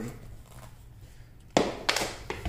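Two sharp knocks of cut wooden boards (cabinet door stiles) clacking against each other and the floor as they are handled, coming close together near the end after a quiet stretch.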